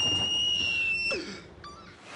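A man's high-pitched, shrill scream of excitement, held on one note for about a second before dropping away.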